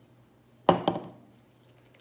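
A single sharp clink of a hard object, about two thirds of a second in, ringing briefly before it dies away; otherwise quiet.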